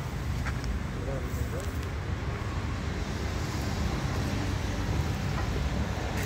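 Hands raking and rubbing a dry heap of soil, husk and wood ash together, giving a soft rustling scrape over a steady low rumble.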